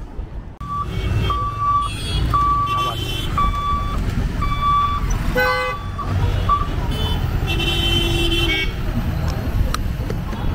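Busy road traffic of motorcycles and small vehicles with engines running, and horns honking: a run of about five short high beeps in the first five seconds, then a longer horn blast with several tones near the end.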